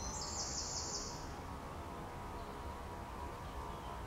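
Garden ambience: a high, rapidly pulsing trill fades out about a second in, leaving a faint, steady low background.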